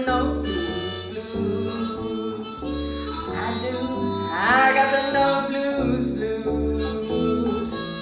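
Harmonica playing a blues fill into a microphone, with a note bent upward about halfway through, over acoustic guitar accompaniment in a 12-bar blues.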